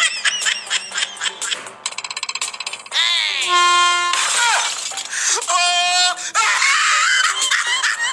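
A string of overdubbed comedy sound effects with shouted voices: quick bouncing boings and clicks, then long held electronic tones, and clay pots shattering in the second half.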